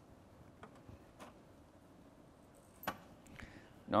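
A few faint clicks and knocks over quiet room tone, the sharpest about three seconds in: hands working the voting machine's power and card slot.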